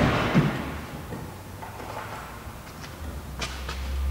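Metal sockets clinking and clicking as a socket is swapped, a few separate sharp clicks. A low hum comes in near the end.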